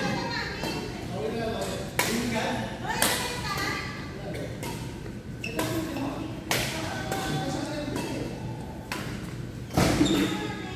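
Badminton rackets hitting a shuttlecock: several sharp smacks a second or more apart, echoing in a large gym hall, over indistinct voices.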